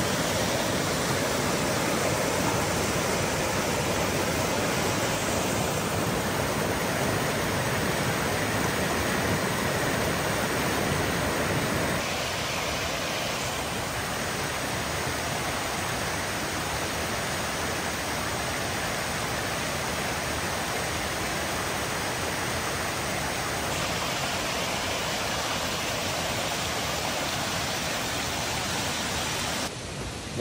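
Zealand Falls, a mountain stream cascading over rock ledges, rushing steadily. The rush grows a little softer about twelve seconds in and shifts slightly again near twenty-four seconds.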